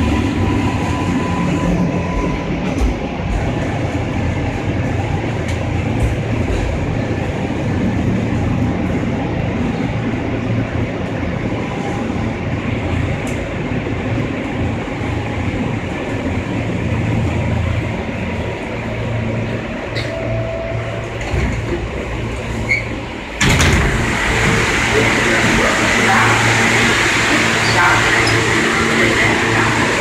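R143 subway car running through the tunnel, a steady rumble with a low motor hum. About three quarters of the way through, the sound suddenly turns louder and hissier as the train stops at a station and the doors open onto the platform.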